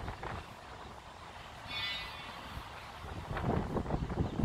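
Low rumble of street traffic and truck engines, with a brief high-pitched tone about two seconds in.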